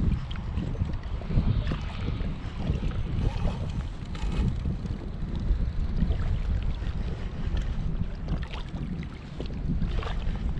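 Wind buffeting the microphone as a steady low rumble, with water lapping against the small craft.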